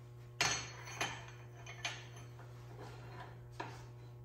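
Metal clinking and knocking as a steel part is handled and fitted at the chuck of a welding positioner: four sharp clinks, the first, about half a second in, the loudest, over a steady low hum.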